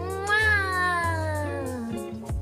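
A girl's long, drawn-out vocal sound as she blows a kiss. It rises in pitch for about half a second, then slides slowly down, over soft background music.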